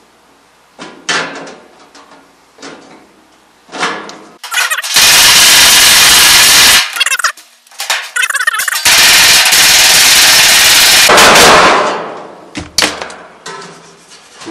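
Power driver running in two loud bursts of about two and three seconds, driving screws into the sheet-metal duct fitting to secure its seams, with a few light metal clicks and knocks before and between.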